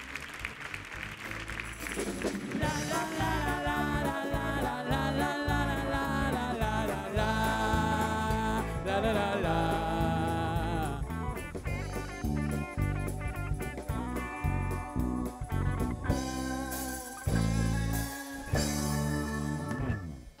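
Live band music: electric guitars over bass and a steady drum beat, the band coming in fully about two seconds in.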